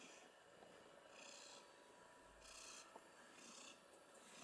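Domestic cat purring faintly close to the microphone, in about three breaths roughly a second apart.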